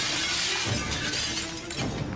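Glass-shattering sound effect in a title sequence: a sudden crash and a long spray of breaking glass, then a second crash near the end, over music.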